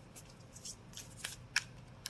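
Round tarot cards being handled at the edge of the deck: several light, sharp clicks and snaps of card edges as fingers separate cards from the stack.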